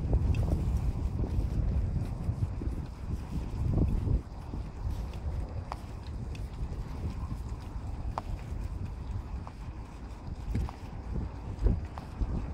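Wind buffeting a phone microphone over the rumble and rattle of a bicycle rolling over brick paving. The rumble is loudest for the first four seconds, then drops, with scattered short knocks and clicks from the bumps.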